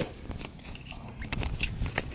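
Camera handling noise as the camera is nearly dropped: irregular rustling and faint knocks of cloth and hands rubbing over the microphone.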